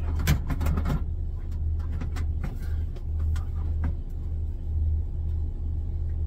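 A steady low rumble runs throughout. A cluster of short knocks comes in the first second and a few faint clicks follow: a countertop microwave being pushed and jostled against the edges of a cabinet opening.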